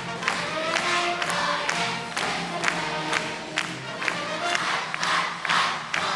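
Large massed school choir singing with accompaniment, over a steady beat of sharp hits about twice a second.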